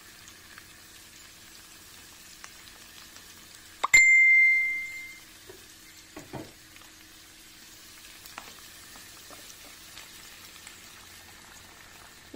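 Peas and vegetables sizzling faintly in a frying pan, with one sharp metallic ding about four seconds in that rings clearly for a little over a second.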